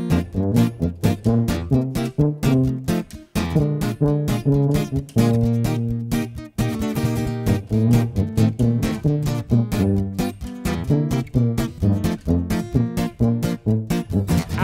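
Instrumental swing break: an archtop guitar strummed in a steady rhythm under a valved brass horn playing the melody in long, low notes.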